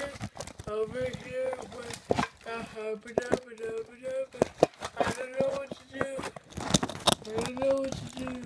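A person's voice making wordless sounds in short, level held notes, with frequent sharp clicks and knocks from things being handled.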